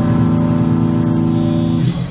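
Amplified electric guitars holding one sustained chord at a steady level, dropping away just before the end.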